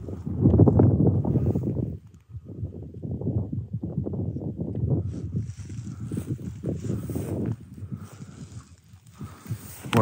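Wind buffeting the microphone and rustling handling noise, loudest and steadiest in the first two seconds, then softer and uneven as the camera is moved about.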